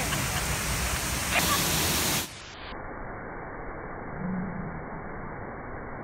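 Steady rush of a waterfall and fast creek. After about two seconds it cuts abruptly to a quieter, muffled rushing.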